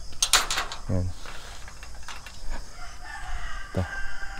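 Metal sliding latch of a welded-mesh steel gate clanking and rattling as it is drawn open, a quick burst of clicks just after the start. Near the end a rooster crows in the background.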